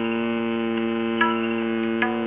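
A man humming one long, steady note with his lips closed, the bee-like hum of Bhramari pranayama, held on a single breath. There is a faint click about a second in.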